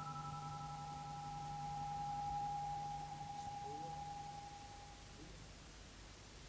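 Sustained electric guitar notes held in long, steady tones. The main note swells about two seconds in, then the notes fade away about five seconds in over a low hum.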